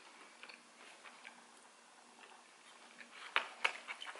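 Close-up chewing of a fried potato wedge, with faint wet mouth clicks and a few louder sharp clicks near the end.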